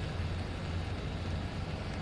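Steady low outdoor background rumble with a faint hiss, even throughout, with no distinct events.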